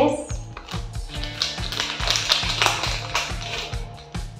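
Background music with a steady, evenly pulsing beat.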